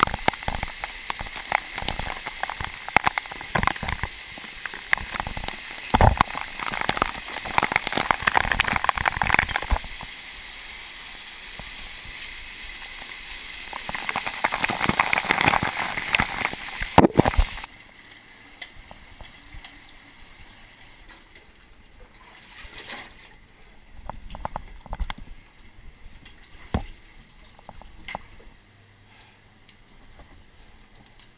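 Water splashing and sloshing around a cave diver surfacing from a flooded sump, loud and churning for a little over half the time, then dropping away to quiet water with occasional small knocks.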